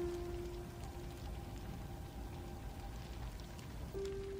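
Faint, quiet film score: a single held note begins and fades out over about two and a half seconds, over a soft, even crackling hiss of background ambience.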